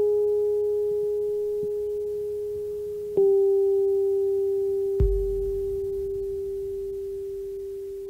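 Slow ambient background music of sustained, nearly pure tones: a single held note that fades slowly, is struck again slightly lower about three seconds in, and again about five seconds in, when a deep bass note joins underneath.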